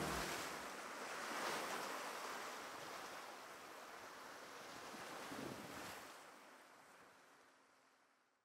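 Faint sea surf washing over rocks, swelling a little twice, then fading out near the end.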